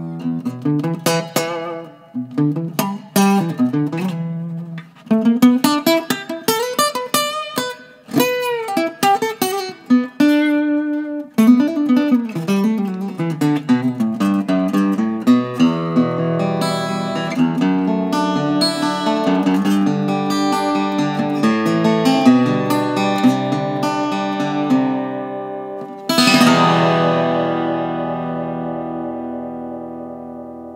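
Enya Nova Go SP1 carbon fiber travel guitar played fingerstyle, picked notes and chords with reverb from its built-in speaker effect, so it sounds like it's in a big room. About four seconds before the end a chord is struck and rings out, fading slowly: the guitar's long sustain.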